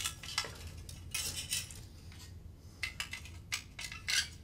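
Light metallic clinks and rattles from pliers and a fluorescent fixture's metal lamp-holder bracket being handled, a string of irregular small clicks.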